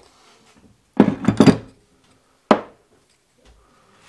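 Hand tools knocking and clattering on a wooden workbench: a quick cluster of knocks about a second in, then one sharp knock about halfway through.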